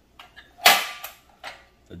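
Pressed-steel 1959 Tonka toy dump truck with its dump bed being worked by hand: a few light clicks, then one sharp metal clank a little after half a second in, and a lighter click near the end. The tipping mechanism still works.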